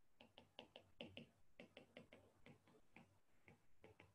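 Faint, quick clicks of a stylus tip tapping on a tablet's glass screen during handwriting, about four or five a second.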